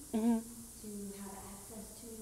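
A voice talking at a distance from the microphone, with a short, louder vocal sound about a quarter of a second in.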